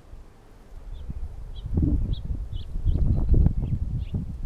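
Irregular low rumble and dull thumps on the microphone, louder in the second half, with short faint bird chirps scattered through.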